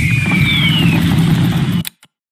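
Online slot game's fire sound effect as the burning Wild heart animates: a loud, steady rumble with a hiss over it and a couple of falling whistles, cutting off suddenly near the end.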